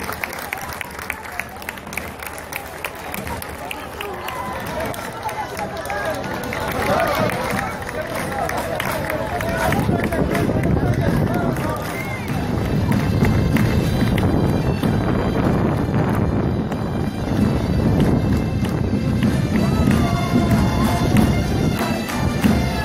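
Parade street sound: crowd voices and music, growing louder in the second half, with bagpipes coming in near the end.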